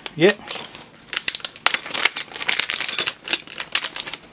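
Crinkling of a silvery anti-static plastic bag being handled and rummaged through in a cardboard box, a dense run of quick crackles that dies away near the end.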